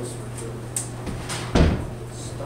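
A single thump, like a wooden board or door knocking, about one and a half seconds in, over a steady low hum.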